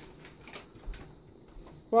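Faint light scraping and a few soft taps as crumbled cooked sausage is tipped from a plastic bowl into a cast iron skillet.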